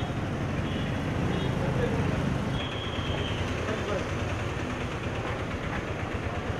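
Busy street traffic noise with people's voices mixed in. A short high tone sounds about two and a half seconds in.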